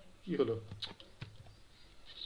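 A few quiet computer keyboard clicks, just after a brief low murmur from a man's voice.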